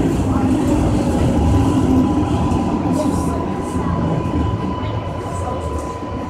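R143 subway car running with a dense low rumble and a thin, steady whine, easing off as the train pulls out of the tunnel into a station.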